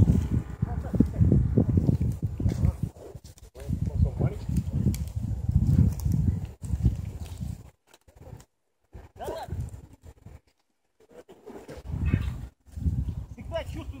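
Indistinct voices over low, gusty wind rumble on the microphone, dropping out to near silence for a few seconds past the middle.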